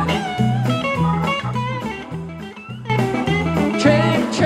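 Live rock band playing an instrumental passage: an electric guitar lead with bent notes over a pulsing bass line and drums. The band thins out briefly about halfway through, then comes back in full.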